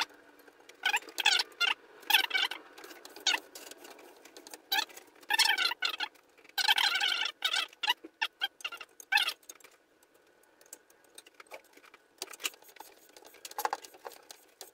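Tennis string being woven over and under a racquet's main strings and drawn through, sliding against them in irregular bursts of friction, some with a squeak, with a quieter lull about ten seconds in.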